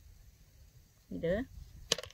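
A single sharp snip of scissors clipping the hard coat of a snake gourd seed, near the end.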